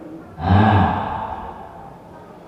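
A man's single breathy, voiced sigh close into a handheld microphone, starting about half a second in and fading away over about a second.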